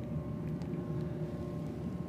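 Room tone: a steady low mechanical hum with a few faint ticks.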